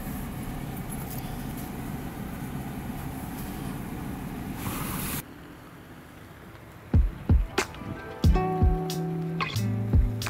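Jeep Gladiator driving slowly over a dirt forest trail, heard from inside the cab as a steady rumble of engine and tyres; about halfway through it cuts off. Plucked guitar music begins a couple of seconds later, with sharp plucked notes and held low bass notes.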